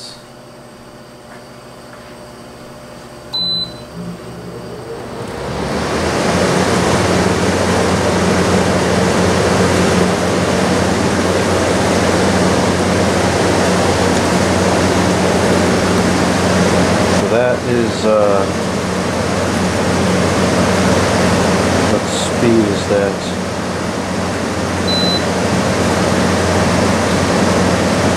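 Frigidaire FHWC253WB2 25,000 BTU window air conditioner switched on: a single beep from its control panel, then its fans spin up about two seconds later into a steady rush of air with a low hum, running on fan only with the compressor not yet on. Two more short beeps come near the end as the fan speed is changed.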